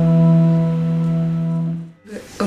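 Live instrumental music: a long sustained note, with fainter higher tones held above it, ringing on steadily, then fading out just before the end.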